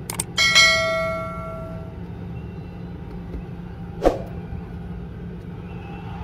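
Subscribe-button animation sound effect: quick mouse clicks followed by a single bell ding that rings out and fades over about a second and a half. A sharp click about four seconds in, over a steady low hum.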